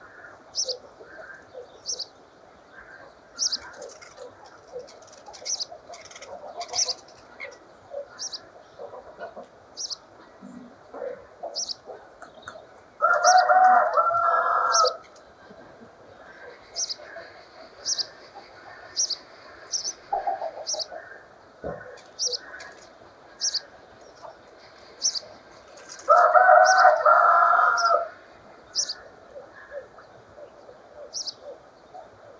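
Small birds calling: short, sharp high chirps about once a second over a steady low twittering chatter, typical of common starlings and sparrows. A rooster crows twice, about two seconds each time: once a little before halfway and again near the end. These crows are the loudest sounds.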